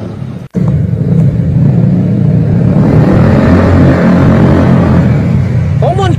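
Loud motorcycle engine noise from the street, a deep rumble whose note swells and falls through the middle as it revs and accelerates. The sound cuts out briefly about half a second in.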